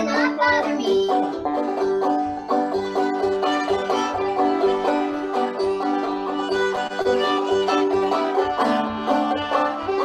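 Banjo picking an old-time tune in a steady rhythm, with a fiddle coming in about a second in and playing long bowed notes over it.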